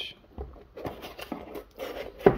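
Faint rubbing and scraping of a tape-wrapped cardboard parcel being handled and turned over in the hands, with a few light knocks.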